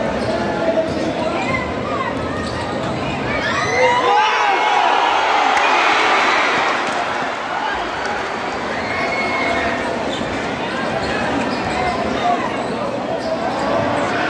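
Basketball game crowd in a gymnasium: a ball dribbling on the hardwood court under steady spectator chatter and shouts, with the crowd noise swelling about five seconds in.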